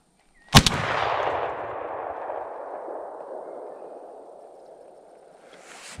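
A single shotgun shot, sharp and loud close up. Its echo rolls away and fades over about five seconds.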